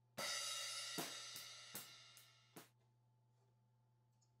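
Recorded drum-kit cymbals played back in a mix: one cymbal struck about a quarter second in and ringing, then five quicker hits about every 0.4 s. The playback stops suddenly just under three seconds in.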